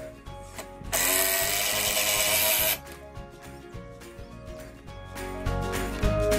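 Cordless drill driving a screw into a 2x4 wooden rack piece: one steady burst of about two seconds, starting about a second in, over background music.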